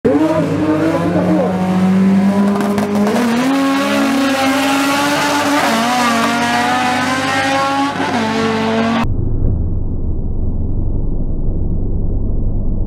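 Hatchback drag car's engine running hard at high revs with tyre squeal as it launches off the line, its pitch stepping up and holding. About nine seconds in, the sound cuts abruptly to a muffled low rumble.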